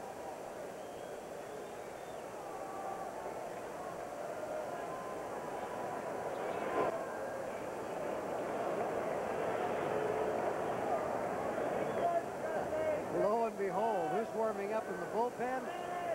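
Ballpark crowd murmur with scattered distant voices, building gradually louder, and a single sharp pop about seven seconds in. A man's voice starts talking near the end.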